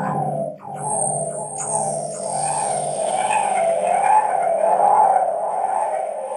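Electronic keyboard synthesizer playing a wavering tone that slowly rises and falls in pitch, with a brief drop about half a second in.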